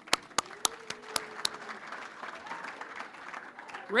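Audience applauding: a few sharp separate claps at first, then steady light applause.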